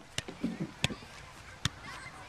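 Soccer ball kicked repeatedly while being juggled: three sharp thumps of foot on ball, a little under a second apart. A brief voice sound falls between the first two.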